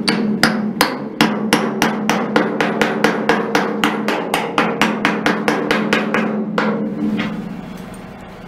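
Short-handled sledgehammer beating a steel patch plate into a cut-out opening in a locomotive's steel saddle tank, about four quick blows a second, the metal ringing under them. The blows stop about two-thirds of the way through and the ringing fades.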